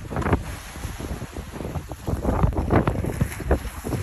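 Strong wind buffeting the phone's microphone in uneven gusts, a rough low rumble.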